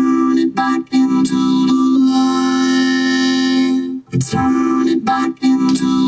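Vocoded voice: a backing-vocal track run through FL Studio's Vocodex vocoder, so that the words are carried on a synth chord section and sound like a singing keyboard. It comes in a few short phrases with one long held chord in the middle.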